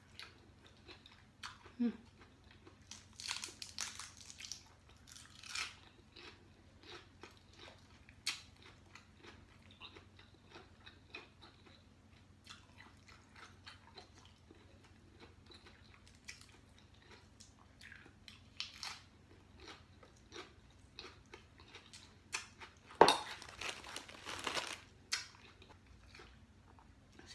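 A person chewing a mouthful of food close to the microphone: irregular wet mouth clicks, smacks and a few crunches, with a louder cluster of noise near the end.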